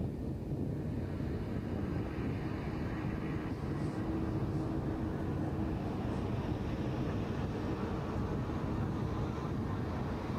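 Small single-engine propeller plane running steadily at low power as it comes in low over the runway to land.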